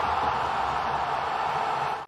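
A steady, loud rushing hiss of noise, a transition sound effect under an edited title card, cutting off abruptly at the end.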